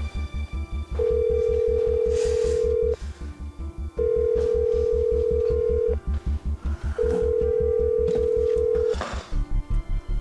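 Telephone ringback tone of an outgoing call: a steady tone about two seconds long, heard three times with a one-second pause between. The called phone is ringing but nobody answers. Tense background music with a fast low pulse plays underneath.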